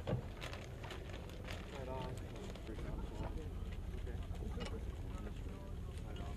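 Indistinct voices of soldiers talking near the gun over a steady low rumble, with a sharp knock right at the start and scattered light clinks of metal gear as the crew handles the M119 howitzer's equipment.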